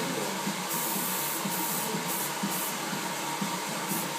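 Aerosol hairspray can sprayed onto short hair in several short hisses, over a steady background hiss.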